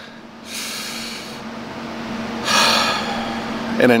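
A man's breathing: a quick breath in, then a louder breath out a second or so later, over a steady low hum.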